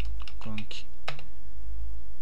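Computer keyboard being typed on, several quick key clicks in the first second or so, over a steady low hum.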